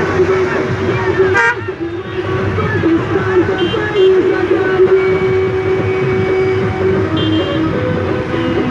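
Car horns honking in a slow convoy of cars and motorcycles, one horn held in long steady blasts over running engines, with voices mixed in.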